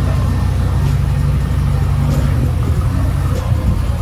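Mazda RX-7 FD's twin-rotor 13B-REW rotary engine idling steadily just after being started, a low even rumble. It seems to be in good health.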